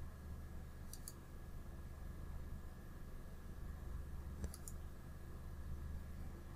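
Computer mouse clicks: a pair of quick clicks about a second in and a short cluster of clicks around the middle of the second half, over a steady low hum.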